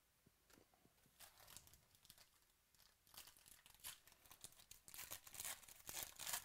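Foil wrapper of a 2018 Chronicles Baseball card pack crinkling faintly as it is picked up and torn open. The crackle grows denser and louder over the last few seconds.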